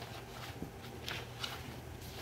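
Faint rustling and brushing of cotton fabric and a paper pattern being handled and shifted on a cutting mat, in a few short soft scrapes.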